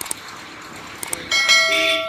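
Subscribe-button sound effect: a few soft mouse clicks, then a bell chime ringing with several steady tones for under a second near the end.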